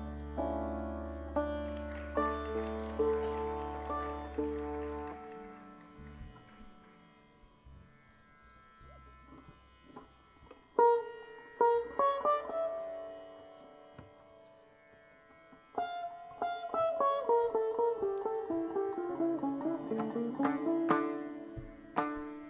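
Sitar played slowly in Indian classical style: single plucked notes that ring and decay, with sliding, falling pitch bends later on. A low steady drone under the first few seconds stops about five seconds in, and a near-quiet pause comes before the plucked phrases resume.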